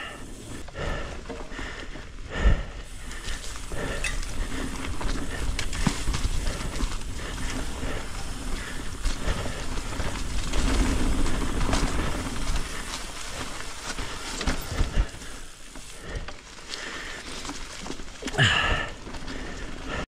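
Mountain bike ridden fast down a dirt forest trail: tyres rolling over the rough ground with a steady low rumble and a scatter of small rattles and knocks, and one sharp knock about two and a half seconds in.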